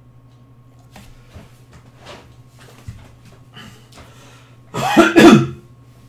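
A man coughing: two loud, quick bursts near the end, after a few seconds of faint small noises.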